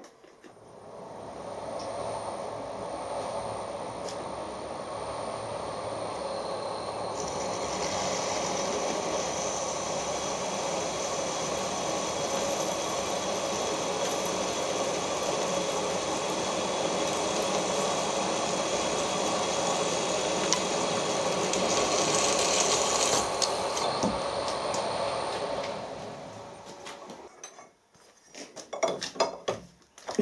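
Milling machine spindle turning a 7.9 mm twist drill that cuts a hole into a metal block, with a steady machine noise. The sound grows brighter and harsher from about seven seconds in while the drill is cutting, then winds down a few seconds before the end.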